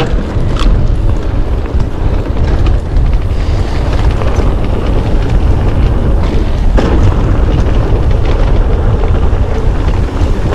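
Heavy wind buffeting on the mountain bike's camera microphone during a fast downhill descent, mixed with the rattle and knocks of the bike over rough trail. Sharper knocks come about half a second in and again near seven seconds.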